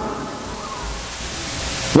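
Steady hiss of recording background noise, growing brighter towards the end, with a low rumble through the middle.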